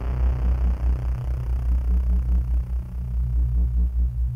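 Electronic music: a deep synthesizer bass that pulses in loudness several times a second, with sustained low tones above it and the higher sounds thinning away.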